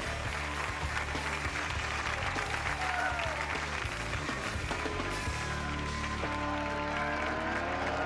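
Studio audience applauding over closing music with a guitar, with a few rising and falling tones that sound like whistles among the clapping.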